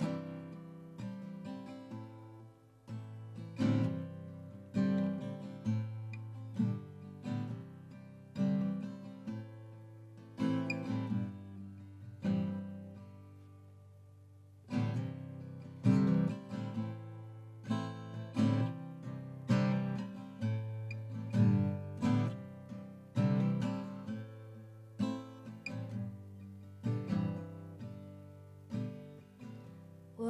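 A 1965 Gibson LG-1 small-body acoustic guitar played solo, chords struck about once a second with the notes ringing between them. At about twelve seconds in one chord is left to ring and fade before the playing picks up again.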